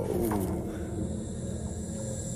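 Sound-design call of a frost whale, a fictional ice-dwelling giant from the animated episode. It is a deep moan that starts suddenly with a high hiss and falls in pitch over the first second, over soundtrack music.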